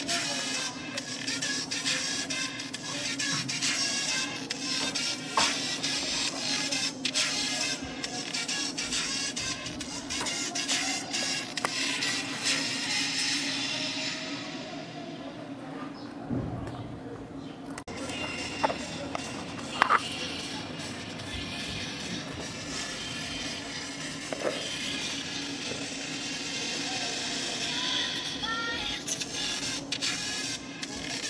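A song playing through the tiny speakers of a pair of A88 wireless earbuds, with little bass. About halfway through the sound turns duller for a few seconds.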